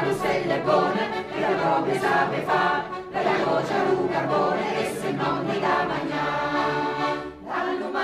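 Mixed folk choir of men's and women's voices singing together, with a short break between phrases near the end.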